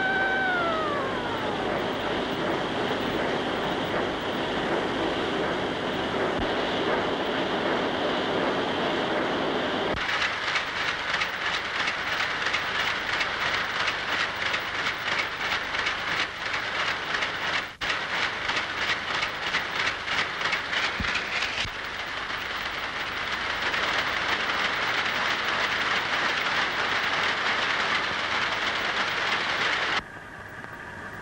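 Textile mill machinery running: a motor whine falls away in the first second or two over a steady mechanical din. About a third of the way in, a fast, even machine clatter sets in and lasts about twelve seconds, then gives way to the steady din.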